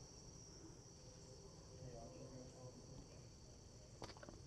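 Near silence with a faint, steady, high-pitched chorus of insects.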